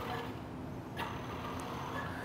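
Traxxas Slash RC truck's electric motor and drivetrain running faintly as it drives under a load of about 40 pounds of weight plates, its suspension nearly bottomed out. A sharp click about a second in.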